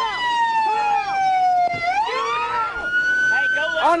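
Police car siren on its wail setting, one slow sweep falling for about two seconds and then rising again, loud and steady throughout.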